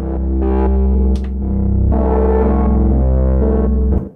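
Arturia MiniFreak synthesizer playing its 'Odyseq' patch: a loud, steady low bass drone with notes shifting above it, cutting off abruptly at the very end.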